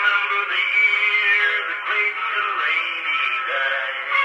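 Edison cylinder phonograph playing a country song at 120 rpm through its painted horn, with a singing voice. The sound is thin and narrow, with no bass and little top.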